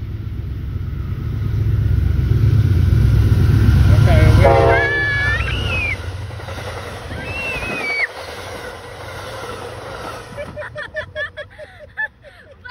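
Train passing at close range: a heavy low rumble of wheels on rails that builds to its loudest about four seconds in and stops abruptly at about eight seconds. A person's high-pitched yells ride over the rumble in the middle, and voices follow near the end.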